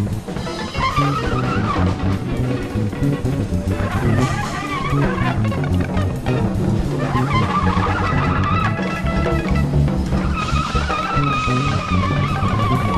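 Live electric jazz-funk improvisation: trumpet and electric guitar playing wavering lead lines over bass guitar and a busy drum kit.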